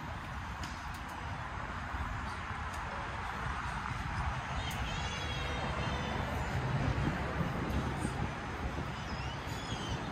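Outdoor ambience: a steady low rumble of wind and distant traffic, with a few faint high chirping calls about five seconds in and again near the end.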